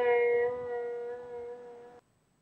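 Veena's last plucked note ringing out, one held pitch with its overtones slowly fading at the close of a piece, then cutting off suddenly at the very end.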